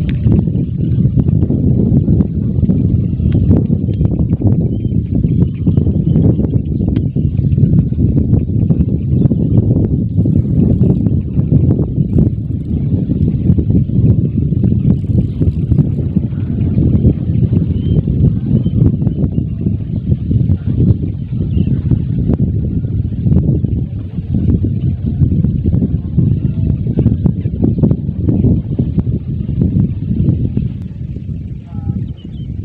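Wind buffeting the microphone: a loud, continuous, gusting rumble, with faint scattered knocks.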